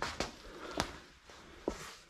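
Footsteps and shuffling, with four light knocks spread over two seconds.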